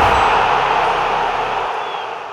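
Logo-sting sound effect: a loud hiss of static-like noise that slowly dies away, with a faint high tone near the end.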